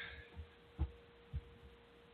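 A faint steady hum fills a pause in talk, with two soft low thumps about half a second apart.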